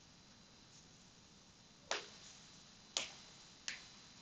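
Three separate key presses on a computer keyboard, sharp clicks about a second apart starting about halfway in, over faint room hiss.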